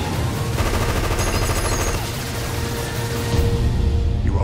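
Rapid bursts of machine-gun fire mixed into a loud trailer music score.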